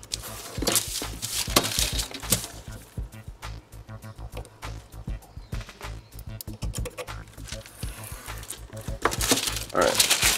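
Craft knife cutting through a sticker sheet and wax paper along a steel ruler on a cutting mat: a run of irregular scratchy strokes and paper rustles, heaviest in the first couple of seconds and again near the end.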